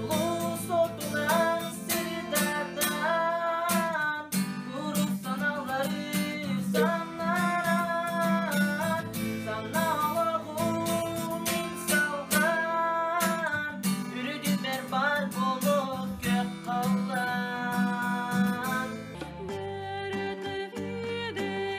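A young man singing a song in Yakut (Sakha) to a strummed acoustic guitar, the voice moving in long melodic phrases over steady strumming.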